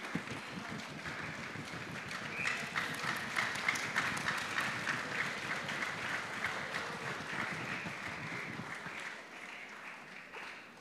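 Audience applauding: a steady patter of many hands clapping that thins out slightly near the end.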